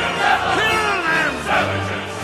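Dramatic orchestral film-score music with massed voices crying out like a battle cry, one long falling shout about halfway through.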